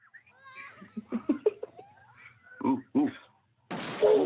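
Children's voices in short high-pitched cries and calls, the two loudest just before three seconds in. A sudden burst of rushing noise starts near the end.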